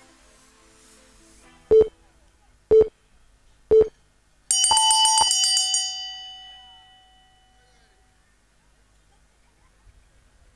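MMA round timer counting down the last seconds with three short beeps a second apart, then the end-of-round bell, which rings out and fades over about three seconds to signal the end of the first round.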